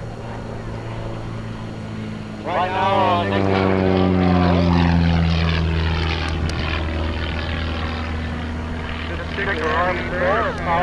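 Van's RV-4 aerobatic plane's propeller engine swelling suddenly as it makes a fast pass about two and a half seconds in. Its pitch then slides steadily down as it pulls away into a steep climb, and the sound slowly fades.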